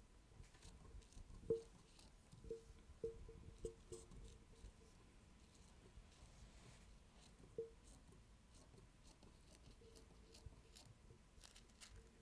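Scissors cutting through thin pattern paper, faint: a run of short snips with a slight metallic ring in the first four seconds, and one more about seven and a half seconds in.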